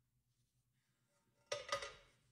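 Near silence, then about one and a half seconds in two quick ringing clanks of kitchenware, a fraction of a second apart, that fade away.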